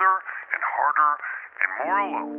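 A vocal sample in a lo-fi track, filtered thin like a voice over a telephone or radio, in quick chopped phrases. Near the end a held chord of steady tones comes in.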